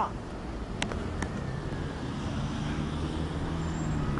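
City street traffic: a steady low rumble of road vehicles, with one engine's hum building over the last two seconds and two sharp clicks about a second in.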